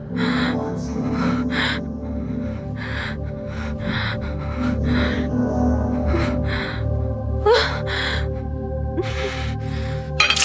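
A woman gasping for breath again and again, a dozen or so sharp breaths at uneven intervals, over low sustained film score.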